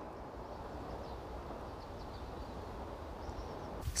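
Faint, steady wind noise in the open air, a low even rush with no distinct events.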